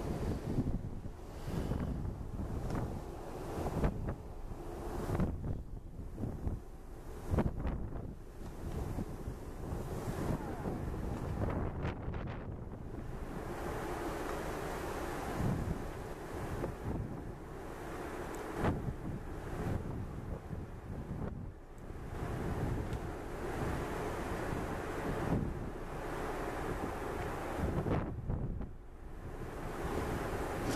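Wind buffeting the microphone in irregular gusts over the wash of the open sea.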